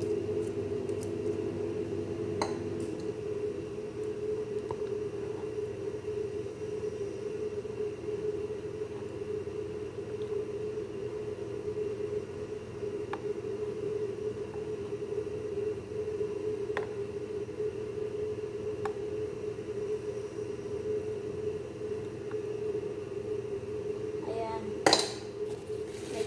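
A steady low hum, with a few light clicks of a metal spoon and wire whisk as batter is scraped off and spread.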